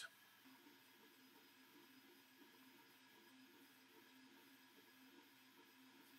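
Near silence, with only a very faint low hum.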